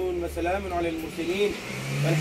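A man's voice chanting an Arabic prayer recitation with long held notes, closing a Muslim supplication. A vehicle's low rumble runs under the first second.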